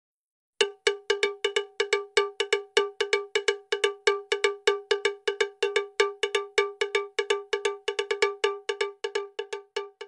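Intro sound effect: a fast, steady run of identical bell-like metallic strikes, about five a second, each dying away quickly. They start about half a second in and thin out near the end.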